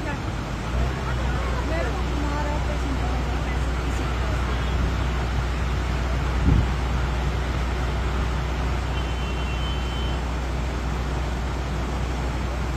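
Steady outdoor noise: a continuous roar with a deep rumble underneath, and a single thump about six and a half seconds in.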